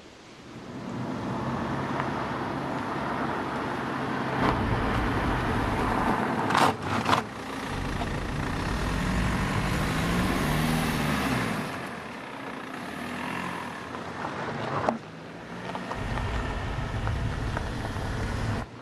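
Car engines running and driving, the engine note rising and falling around the middle as it revs. Two sharp bangs come close together about seven seconds in.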